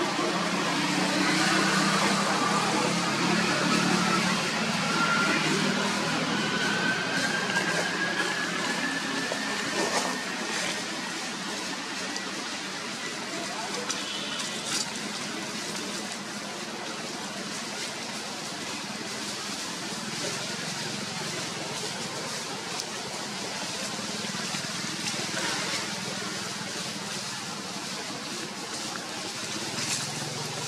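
Indistinct voices of people nearby over a steady wash of outdoor noise, with a faint tone slowly rising in pitch over the first ten seconds or so.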